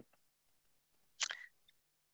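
Near silence, with one brief soft noise a little over a second in.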